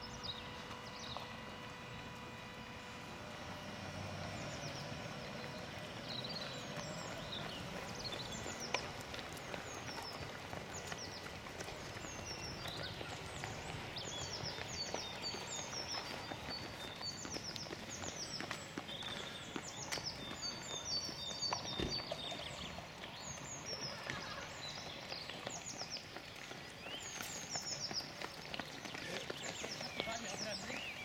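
Footsteps of many marathon runners on a paved road littered with plastic drink cups, a steady run of footfalls. Birds chirp over them, more densely in the second half.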